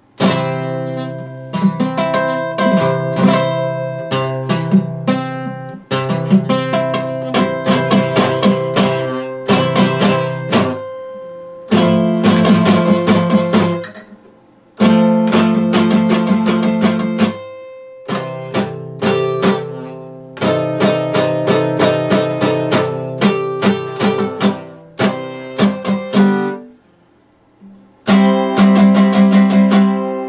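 Epiphone steel-string acoustic guitar strummed in chords, in phrases that stop and start again several times with short breaks, the longest near the end.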